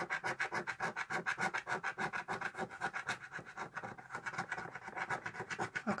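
Fingernail scratching the silver latex coating off a paper scratch card in quick, even strokes, several a second.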